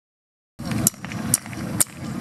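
Hand claps keeping a steady beat, about two a second, starting about half a second in, over a low background rumble.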